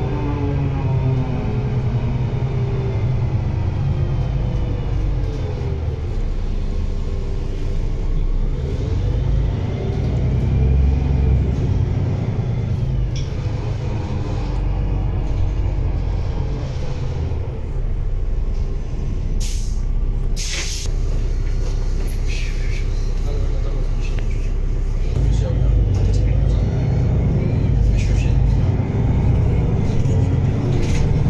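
Inside a Solaris Urbino 12 III city bus: its Cummins ISB6.7 inline-six diesel pulls the bus away and runs under load, its pitch rising and falling as the ZF EcoLife six-speed automatic changes gear, with a steady low rumble. A few sharp knocks come about two-thirds of the way through.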